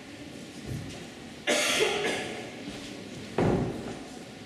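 A person coughing once, a short harsh burst about one and a half seconds in, followed near the end by a dull thump.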